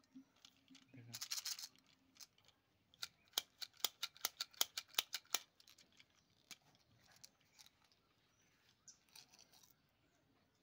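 Sugar-coated chocolate buttons clicking against the clear plastic tube of a toy candy dispenser as they are tipped and shaken out: a short rustle about a second in, then a quick run of about a dozen sharp clicks, roughly five a second, with a weaker rustle near the end.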